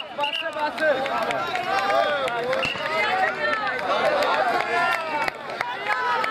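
Crowd of many voices shouting and calling out over one another, with scattered sharp clicks.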